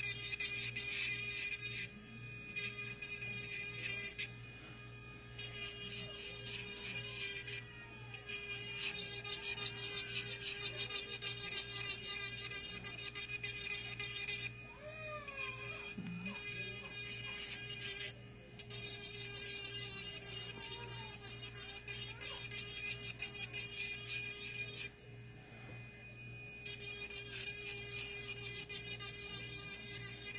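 Nail filing on dip-powder nails: a file rasping in quick strokes, in spells of a few seconds broken by short pauses.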